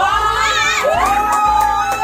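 A small group of people cheering and shrieking excitedly in long, wavering cries, with a few hand claps.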